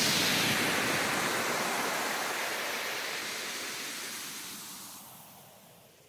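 A hissing wash of noise, the tail of an effect that closes a club-music DJ mix, fading steadily to silence over about six seconds.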